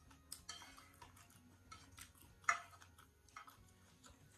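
Close-up mukbang eating sounds from a woman eating hotpot out of a porcelain bowl: scattered short, sharp mouth clicks and smacks, the loudest about two and a half seconds in.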